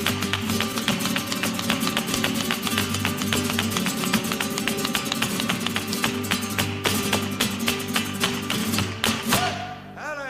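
Flamenco guitars playing with dense, fast percussive strikes over them: the dancer's heel-and-toe footwork (zapateado) on the stage floor, with hand-clapping palmas. The piece ends near the end with a few hard final strikes.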